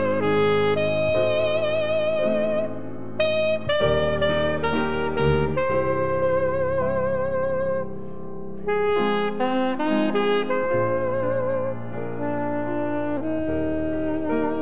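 Solo saxophone playing a slow melody in long held notes with vibrato, phrase by phrase with short breaks between, over a sustained accompaniment of held lower chords.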